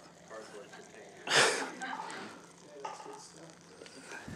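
Low, indistinct talking, with one short, loud burst of noise about a second and a half in.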